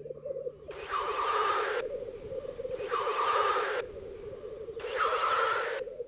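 Displaying black grouse: a continuous low bubbling song, broken three times by a loud hissing call about a second long, spaced about two seconds apart.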